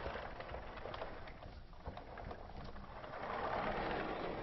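Dry-erase marker scratching and squeaking on a whiteboard in uneven writing strokes, with a few light taps.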